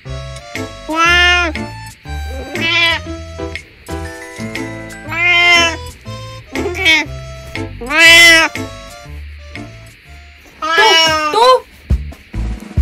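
Elderly cat meowing about six times at intervals of a second or two, each meow rising and then falling in pitch, over background music with a steady beat.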